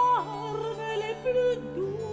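Operatic singing with Baroque period-instrument accompaniment. A held high note slides down just after the start, then the vocal line carries on with vibrato over sustained low notes.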